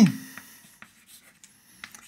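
Chalk writing on a blackboard: faint, scattered scratches and taps of chalk strokes.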